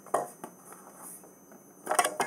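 Parts being pulled off the back of a picture frame by hand, with short sharp snaps and clicks: one just after the start, a smaller one about half a second in, and a louder cluster near the end.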